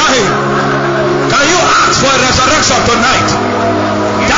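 A congregation praying aloud at once, many voices rising and falling over steady held chords of background music.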